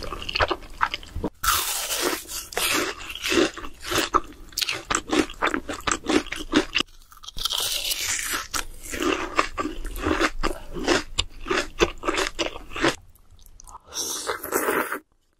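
A person eating close to the microphone: chewing with many quick, crunchy bites, in an irregular stream with a couple of short pauses.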